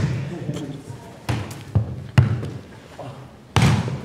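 A football being kicked and bouncing on a hard indoor floor during a rally: four sharp thuds, spaced unevenly over a couple of seconds, each followed by a short echo from the large hall.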